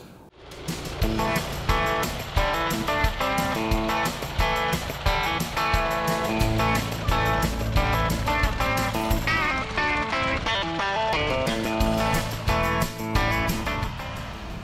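Background music with guitar over a steady beat.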